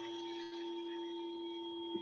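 A steady hum of several held tones, one low and a few higher, unchanging and without any strike or fade.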